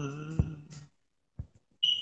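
A man singing, holding the last note of a worship line until it ends about a second in. A short, high beep sounds near the end.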